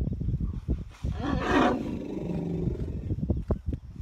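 An elephant roars once, starting about a second in: a harsh, noisy call that settles into a lower tone sliding down in pitch and ends after about a second and a half. Scattered low thuds are heard throughout.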